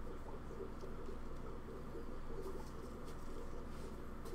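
Steady low background hum with a faint fluttering texture, and a few soft ticks.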